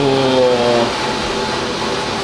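A man's drawn-out vocal sound, a held vowel falling slightly in pitch, lasting about the first second, then a steady background noise.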